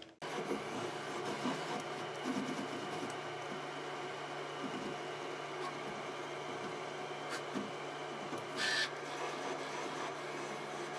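Qidi Tech X-one2 3D printer printing: its stepper motors drive the print head back and forth with a steady whine of several tones and small irregular clicks. A short hiss comes near the end.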